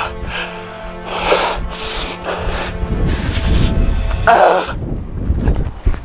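A man breathing hard with sharp, hissy exhalations about once a second, from the effort of hanging knee raises on a pull-up bar. Background music with a steady low tone runs under the breaths.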